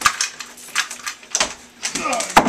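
Glass front pane of a wooden snake cage clinking and knocking in its frame as it is worked loose and lifted out: a quick, uneven string of sharp clinks and taps.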